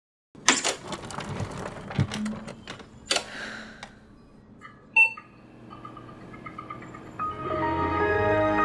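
Old desktop PC starting up: a switch clunk and a run of clicks and rattles from the machine, then a single short beep about five seconds in. Music comes in after the beep and swells near the end.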